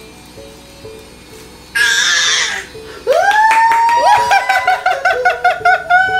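Baby's high-pitched 'war cry' as she pushes up to stand: a short breathy squeal about two seconds in, then a loud voice that rises and holds, pulsing rapidly, for the last three seconds. Soft background music underneath.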